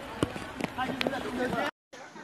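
Faint voices in the background, with a few sharp clicks. The sound drops out completely for a moment near the end.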